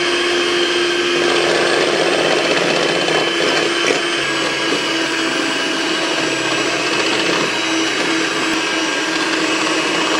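Electric hand mixer running at a steady speed with a constant motor whine, its twin wire beaters whipping egg whites in a glass bowl toward stiff peaks.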